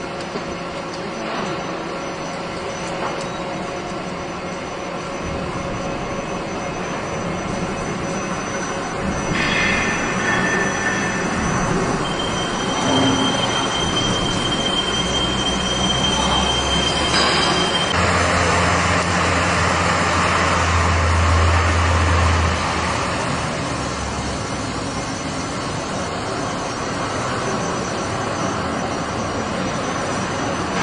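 Layer rewinding machine for welding wire running: a steady mechanical whir with a thin high whine for several seconds around the middle, and a low hum that swells and then eases off.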